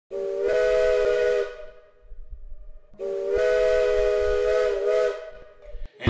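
Steam locomotive chime whistle blowing two long blasts, each a chord of several tones over a hiss. The first lasts about a second and a half; the second, about two seconds, wavers slightly in pitch before it fades.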